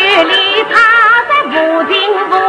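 Yue opera music from a 1954 recording: a single ornamented melody line that wavers with vibrato and slides between notes.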